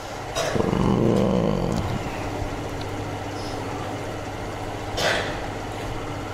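A passing motor vehicle's engine, loudest about a second in and falling in pitch as it fades into a steady low hum.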